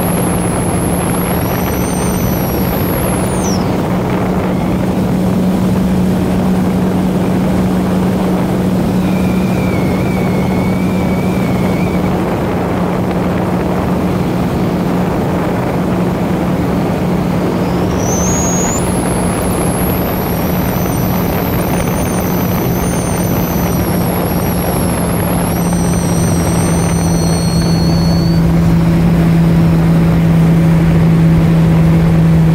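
Sea-Doo GTI jet ski running at speed, its engine a steady drone over the rush of water and wind, getting a little louder near the end.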